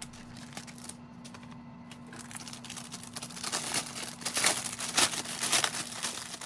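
Clear plastic wrapping crinkling as hands handle it and pull it open. A few light clicks come first, then the crinkling starts about two seconds in and grows louder toward the end, over a steady low hum.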